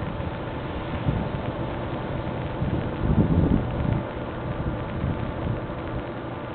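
Wind buffeting the camera's microphone in a low rumble that comes in gusts, strongest about three seconds in.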